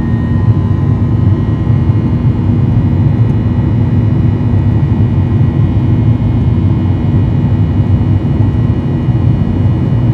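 Steady low roar inside the cabin of a Boeing 737-800 climbing out just after takeoff: its CFM56 turbofan engines and the airflow, with a few faint whining tones above the roar.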